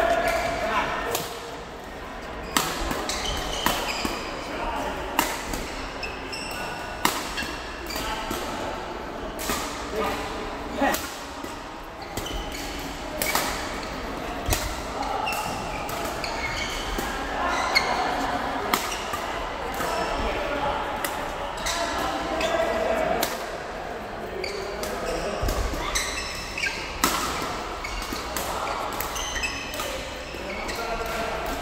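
Badminton rackets striking the shuttlecock during doubles rallies: many sharp strikes at irregular intervals, echoing in a large sports hall, with background voices.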